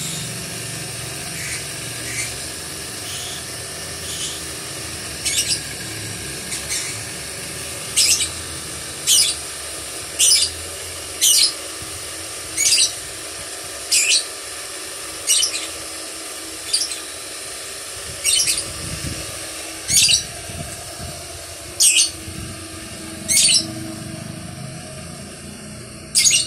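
Steady hum of the electric motor of a belt-driven gemstone drilling rig running while a badar besi pendant stone is drilled. Over it, a bird's sharp, high chirp repeats about once a second, faint at first and loudest from about five seconds in until shortly before the end.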